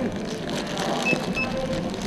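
Two short, high beeps about a third of a second apart from a handheld barcode scanner at a checkout, over steady store background noise.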